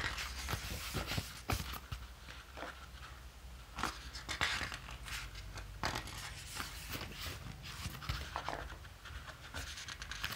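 Glossy photobook pages being handled and turned by hand: irregular papery swishes, slides and soft clicks, with a cluster of rustling about four seconds in.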